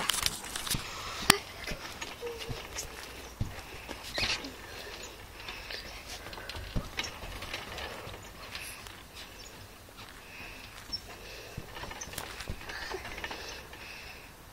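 Irregular thumps of someone landing and bouncing on a trampoline mat during flips, several seconds apart.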